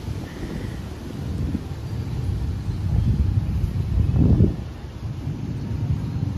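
Wind buffeting the microphone: a low, uneven rumble that swells louder about four seconds in.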